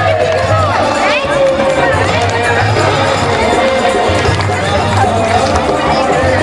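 A procession crowd singing harinaam kirtan together, many voices holding a wavering chanted melody with chatter mixed in.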